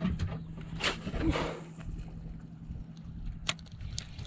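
A cast with a spinning rod and reel: a swish of the rod and the line running out about a second in, then a quieter retrieve over a steady low hum, with a sharp click near the end.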